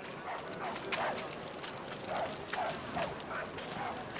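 A dog barking repeatedly in the distance: a string of about ten short barks, each falling in pitch, coming every quarter to half second.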